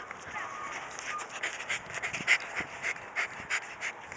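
A Russell Terrier panting hard with its head down an earth hole it is digging, quick breaths about three a second that grow louder from about a second in.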